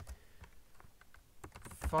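Typing on a computer keyboard: a run of light, irregularly spaced key clicks as words are typed.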